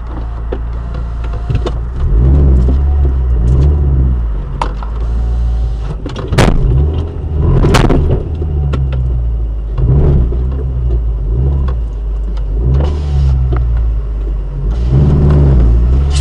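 Car engine heard from inside the cabin, revving up and easing off in repeated swells as the car moves off and pulls away. Two sharp knocks stand out, about six and eight seconds in.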